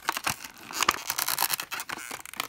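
Stiff clear plastic packaging tray crinkling and creaking, with quick irregular clicks and snaps, as hands bend and pry it to free a toy that is stuck fast inside.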